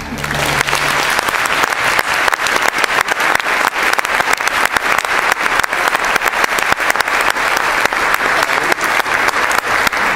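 An audience applauding steadily, a dense patter of many hands clapping. The string orchestra's last low held note dies away in the first second as the clapping begins.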